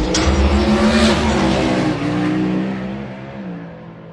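A car engine revving, its pitch climbing and then easing off, before the sound fades away over the last couple of seconds.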